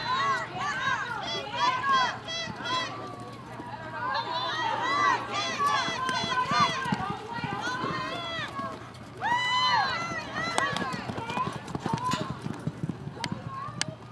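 High-pitched voices yelling in short, repeated shouts through most of the run, with the faint thud of a galloping horse's hooves on arena dirt.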